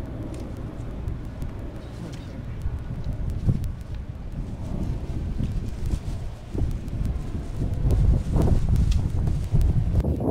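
A shovel digging and prying in the soil beside a buried marble grave marker, with scattered scrapes and knocks that grow louder near the end, over a low wind rumble on the microphone.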